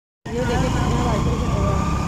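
Small motorcycle running as it rides through busy street traffic: a steady low engine and road rumble, with people's voices over it. It cuts in suddenly after a moment's silence.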